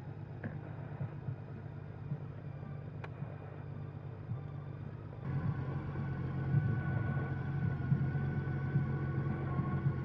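A motor vehicle's engine idling with a steady low hum, which grows louder about halfway through.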